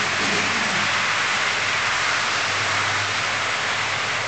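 HO-scale model double-stack container cars rolling past on the track: a steady, even rushing noise with a low hum underneath.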